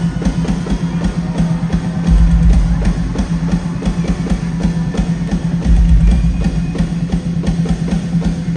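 Live rock drum solo on a large kit: rapid strikes across the drums and cymbals, with bursts of heavy, fast bass drum about two seconds in and again near six seconds.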